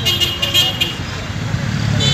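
Street traffic from inside a moving car, with steady engine rumble. A high-pitched vehicle horn sounds in several short pulses during the first second.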